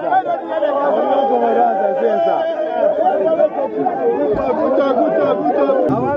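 A group of people talking loudly over one another: lively, overlapping crowd chatter with no single voice standing out.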